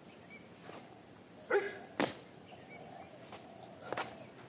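Sharp slap sounds from a kung fu form being performed: a loud slap about two seconds in and a lighter one near the end, from the performer's hands or feet striking. Just before the loud slap there is a brief pitched call.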